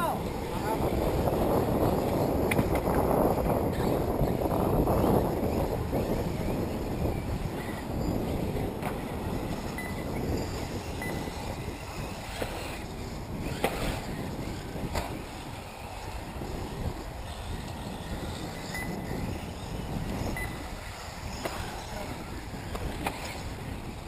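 Wind buffeting the microphone in a rough low rumble, heaviest for the first six seconds and then easing, with indistinct voices underneath and a few faint clicks.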